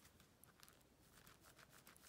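Near silence, with faint, irregular soft clicks and rustles from hands squeezing and turning a flexible clear TPU 3D print.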